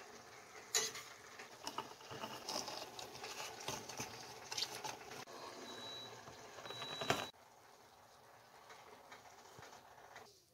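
Lemon halves being juiced by hand on a plastic juicer: faint, irregular crackling and small clicks, with a brief high squeak twice and a sharp click about seven seconds in, quieter after that.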